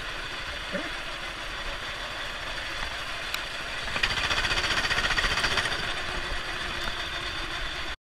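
Four-stroke 270cc kart engine running at low speed, getting louder for a couple of seconds about four seconds in, then easing off again.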